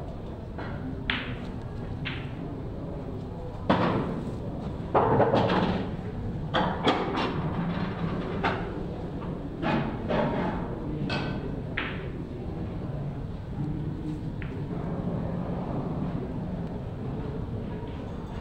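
Pool balls clicking against each other as a player pots a run of balls, with the cue tip striking the cue ball and balls knocking into pockets and off cushions. About a dozen sharp clicks come at uneven intervals, the loudest a pair of heavier knocks about four and five seconds in, over a low room hum.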